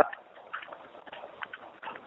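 Faint hiss of a conference-call telephone line, with a few soft ticks, in a pause between speakers.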